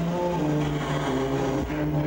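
Electronic music: held synthesizer notes stepping from one pitch to another over a low bass line, with little percussion.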